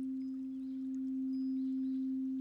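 Frosted quartz crystal singing bowl held in one steady, unwavering tone with a faint higher overtone, kept sounding by a wand circled around its rim.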